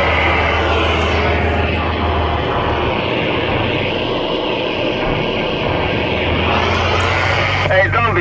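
A truck's engine and road noise heard inside the cab while driving, a steady hum. The deep low note drops away about two and a half seconds in and comes back near the end.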